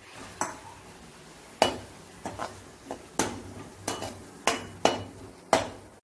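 Metal spatula stirring grated coconut into boiling jaggery in a metal kadai, scraping and knocking against the pan about eight times, roughly once a second, the strongest knocks a little over a second apart.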